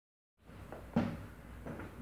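A sharp knock about a second in, followed by a softer thud, over low room noise in an empty room.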